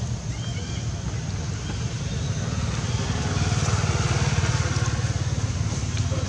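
Motorcycle engine running nearby, a steady low pulsing rumble that grows louder about halfway through and eases slightly near the end.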